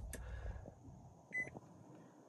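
2019 Nissan Leaf SV powering on: a single short electronic beep from the dashboard about a second and a half in, otherwise only faint cabin background.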